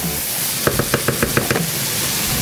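Wooden spatula knocking against a frying pan of sizzling mushrooms and onions, a rapid run of about eight light knocks within a second, over the pan's steady sizzle.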